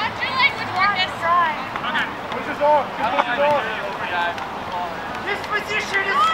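Several voices shouting and calling out across an open sports field during play, short overlapping calls one after another, with no clear words.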